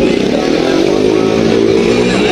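Stunt motorcycles' engines running, one steady pitched drone with slight rises and falls.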